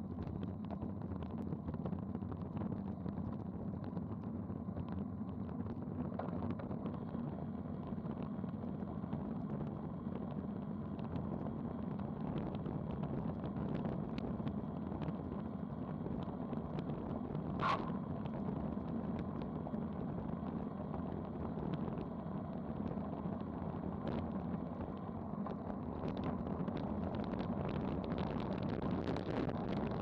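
Wind rushing over a bike-mounted action camera together with road-bike tyre noise on asphalt during a fast descent, a steady rush that grows louder and brighter near the end as the speed climbs toward 30 mph. A single brief sharp click comes a little past the middle.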